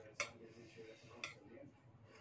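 Metal spoon clinking against a plate twice, about a second apart, over faint background speech.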